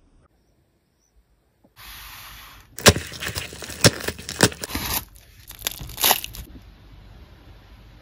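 A plastic bubble mailer being torn open by hand. After about two seconds of near silence there is a short steady hiss, then a run of sharp crackles and ripping, loudest between three and four and a half seconds in, dying away after about six seconds.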